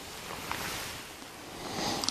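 Quiet handling of brass rifle cases on a work board: a faint steady hiss with one light click about half a second in, as a case is set down.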